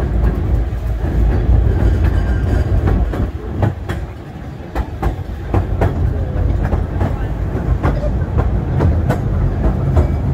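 Steam train carriage running along the track: a steady low rumble with irregular clicks of the wheels over the rails, dipping quieter for about a second around four seconds in.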